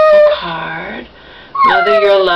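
Pug whining in high, drawn-out whines: a short held whine at the start and a longer one that falls in pitch near the end. The dog wants to be let out to relieve himself.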